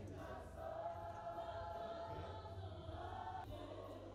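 A choir singing long held notes, fairly quiet, with a short break near the end.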